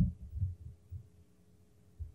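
A pause in an old lecture recording: three or four soft, low thumps in the first second, then only a faint steady hum from the recording.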